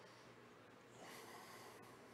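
Near silence: faint room tone, with a soft breath-like hiss that lasts about a second from halfway through.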